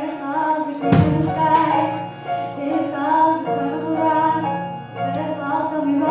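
A girl singing a slow pop ballad into a microphone, live, over piano and keyboard accompaniment. About a second in, the drums come in with a loud cymbal crash and a couple of further hits.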